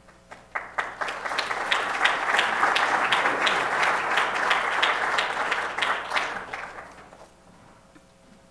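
Audience applauding: a few scattered claps, then full applause from a large seated crowd that fades away about seven seconds in.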